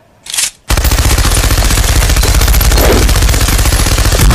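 Sound effect of a machine gun firing in one long, rapid, unbroken burst starting under a second in, after a short noise just before it.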